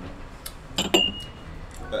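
A spoon clinking against a ceramic cupping bowl: a couple of light taps about half a second in, then one sharp clink just before the middle that rings briefly.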